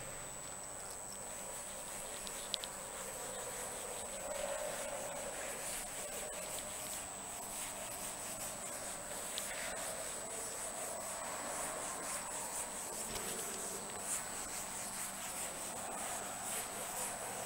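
Cloth duster rubbing across a chalkboard, wiping off chalk writing in a steady run of strokes.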